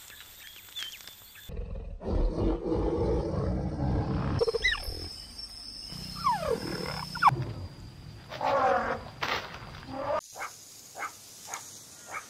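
A string of short wild-animal sound clips. First a loud low growling rumble, then high cheetah calls that slide down in pitch, then a run of short calls about twice a second.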